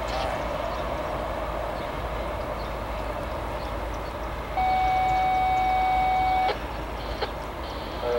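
A GE ES44AC diesel locomotive, working as the rear distributed-power unit of a freight train, runs steadily past along with the rolling noise of the cars on the rails. About halfway through, a steady electronic beep sounds for about two seconds and then cuts off.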